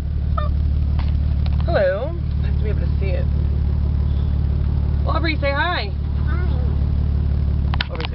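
Steady low drone of a car's engine and road noise heard inside the cabin. Over it a voice makes two short sing-song sounds, about two seconds in and again about five seconds in.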